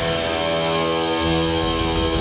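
Live blues-rock band holding a sustained chord that rings on. A low bass note comes in a little over a second in, and the drums start up near the end.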